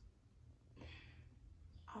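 Near silence with one faint sigh, a breathy exhale, about a second in.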